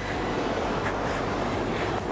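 A steady rushing roar with a low hum beneath it, even in level throughout.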